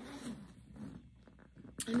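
The top zipper of a Michael Kors satchel handbag is pulled open along the bag in two short rasping strokes.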